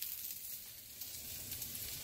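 Faint, steady sizzling of folded corn-tortilla quesadillas frying in a pan, with a few faint ticks.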